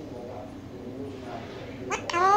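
Alexandrine parakeet mumbling softly. Near the end it breaks into a sharp, steeply rising call.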